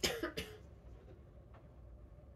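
A person coughing briefly, two quick coughs right at the start, followed by quiet room tone.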